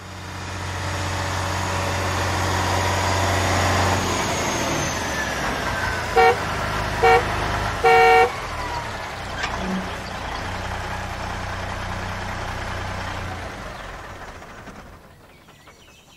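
Car sound effect: an engine running steadily, fading in at the start and out near the end, with three toots of the horn about a second apart just past the middle, the last one longer.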